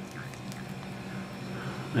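A quiet, steady low hum, with faint small water noises as a fountain pen is swished back and forth in a cup of water to flush out old ink.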